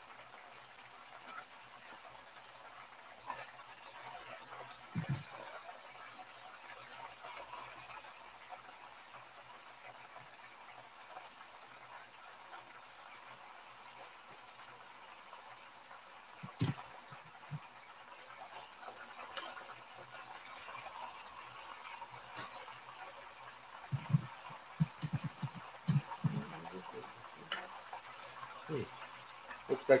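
Chicken deep-frying in a pan of hot oil, a faint steady sizzle, with occasional clicks and clacks of metal tongs against the pan and wire cooling rack, coming in a quick cluster near the end as the fried pieces are lifted out.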